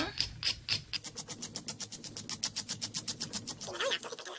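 Hand nail file rasping back and forth over a sculpted gel nail in quick, even strokes, about seven or eight a second, shaping the sidewalls.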